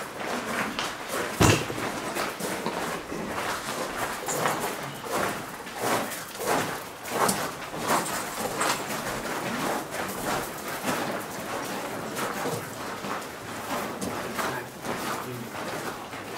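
Footsteps of several people walking on the loose gravel and coal floor of a mine tunnel, an uneven run of scuffs and steps, with one sharper knock about a second and a half in.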